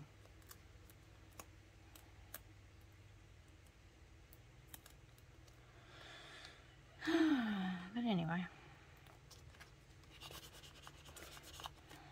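Faint rustling and light clicks of paper and vinyl stickers being handled on a journal page. About seven seconds in, a woman gives a wordless groan lasting about a second and a half, its pitch falling, rising and falling again.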